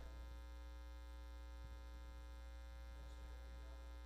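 Low, steady electrical mains hum with a stack of overtones, unchanging throughout.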